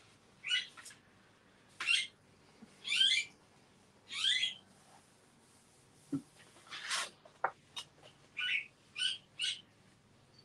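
A small bird calling over and over: short, high chirps, several falling in pitch, about ten of them with irregular gaps.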